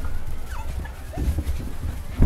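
English Cocker Spaniel puppies giving a few short, faint whimpers and yips, about half a second in and again just after a second in, over a steady low rumble.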